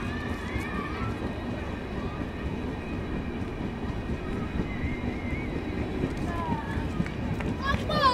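Passenger train running along the platform: a steady rumble of the coach and rushing air on a microphone held out beside the train, with faint voices calling out from the platform.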